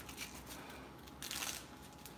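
Cloth wrist wrap being wound around a wrist by hand: faint rustling with a short rasping burst a little after a second in.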